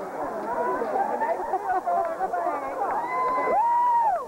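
Crowd of people talking and shouting over each other in celebration, several voices at once, with one long held whoop near the end.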